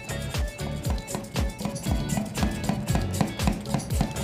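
Hand-pumped plunger milk frother worked quickly up and down in warm milk, about 40 °C, to froth it, over background music.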